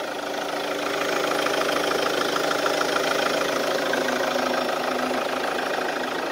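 Chevrolet Captiva's VCDi 16-valve diesel engine idling steadily, heard close up with the bonnet open.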